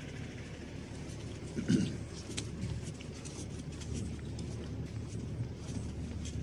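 Footsteps across a muddy concrete farmyard over a low steady rumble, with one brief low sound about one and a half seconds in.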